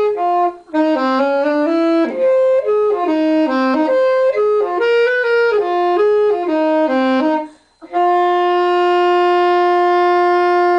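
Saxophone playing a jazz melody solo: a run of short notes stepping up and down, a brief break for breath about three-quarters of the way in, then one long held note.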